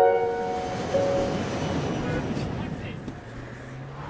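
Film-trailer soundtrack: a piano chord rings out and fades over the first second or two. A rumbling wash of noise takes over, with a low steady hum coming in near the end.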